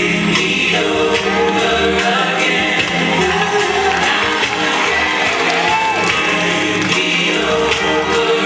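Gospel song with lead singing and a choir, playing loudly and steadily.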